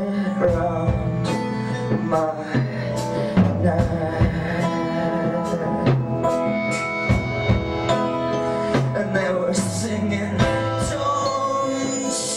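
Live band music: an acoustic guitar strummed over a drum kit, with repeated drum strikes and occasional cymbal hits.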